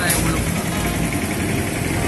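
A motor vehicle's engine idling steadily, with voices in the background.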